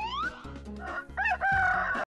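Rooster crowing cock-a-doodle-doo as a cartoon sound effect, rising and then held through the second half, over a light music bed. Just before it, a rising whistle-like glide finishes a moment after the start.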